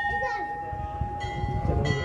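Hanging brass temple bells ringing, with long steady tones. One is still ringing from a strike just before, and fresh strikes come about a second in and again near the end.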